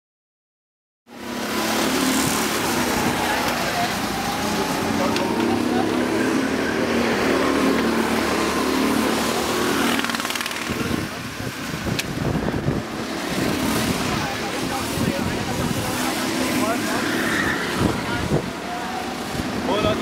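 Go-kart engines running as karts lap the track, a steady engine drone that rises and falls as they pass, with people's voices in the background.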